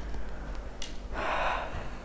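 A soft click, then a short audible breath about a second in.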